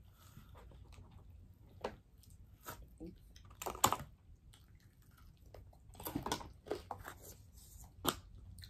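Eating and handling sounds at a table of chicken wings: scattered sharp clicks and taps from plastic sauce cups and containers, the loudest about four seconds in, with the chewing of chicken wings.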